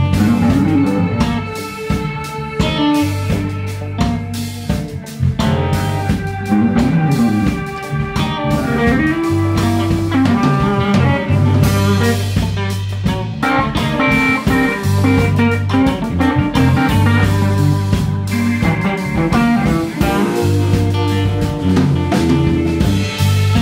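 Live electric guitar, electric bass and drum kit playing an instrumental blues-rock passage, the guitar's lead line bending and sliding between notes over held bass notes and a steady drum beat.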